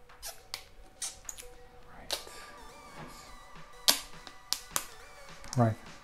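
Thin clear plastic protective film being peeled off a plastic plug adapter, crackling with a string of sharp clicks, the loudest nearly four seconds in.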